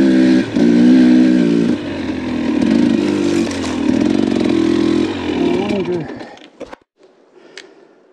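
Dirt bike engine running as the bike rides up a rocky single-track trail, its pitch holding steady in stretches and dipping briefly as the throttle comes on and off. About six seconds in the engine sound dies away to near quiet.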